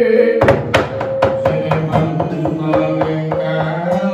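A dalang's cempala and kepyak knocking on the wayang puppet box: a run of sharp knocks starting about half a second in and coming faster, over a held sung note.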